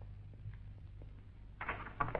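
Quiet background: a steady low hum with a few faint ticks, and no distinct sound event.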